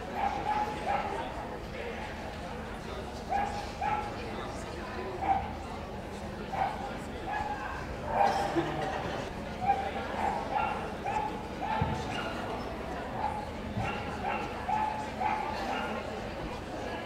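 A dog barking repeatedly in short, high yaps, one or two a second and fairly regular.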